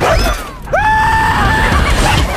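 An animated character's scream: a short burst at the start, then a long held, high-pitched scream lasting about a second, over trailer music.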